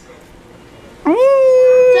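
A child's voice, quiet for about a second, then rising quickly into one long, steady high-pitched note, a held wail or sung howl.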